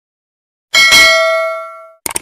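A single bell-like ding from a subscribe-reminder sound effect, struck about three-quarters of a second in, ringing with several clear tones as it fades over about a second.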